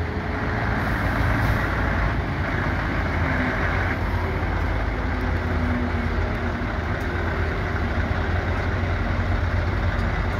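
Scania tractor unit's diesel engine running steadily as the lorry drives slowly past at low speed.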